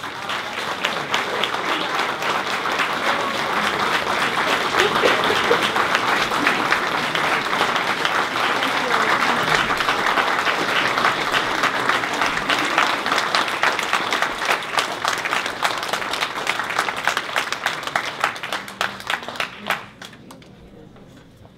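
Audience applauding: dense, steady clapping that thins out toward the end and stops.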